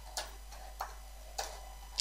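Three separate clicks of computer keyboard keys being typed, spaced about half a second apart.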